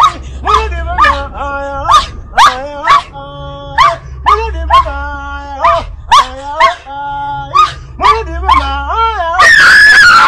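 A voice yelping over and over in short, pitch-bending cries, about two a second, ending in a louder, longer scream near the end.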